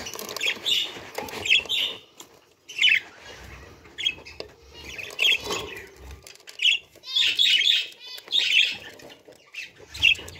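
A yellow parakeet in its nest box giving short harsh squawks and chirps, one about every second, some with a fluttering rasp.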